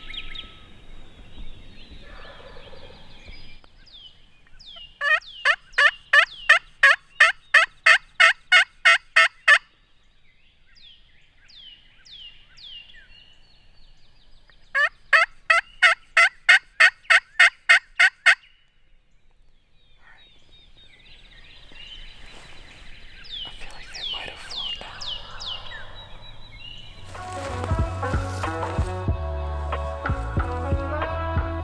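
A turkey friction pot call worked with a striker, yelping like a hen: two long, loud runs of about fifteen quick yelps each, about four a second, every note breaking from high to low.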